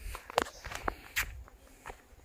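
Footsteps on bare rock: a few irregular steps with sharp scuffing clicks, the loudest about half a second in.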